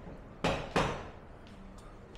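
Two sharp knocks about a third of a second apart, the second slightly louder and ringing briefly.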